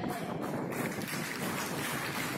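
Audience clapping: a steady, dense patter of many hands.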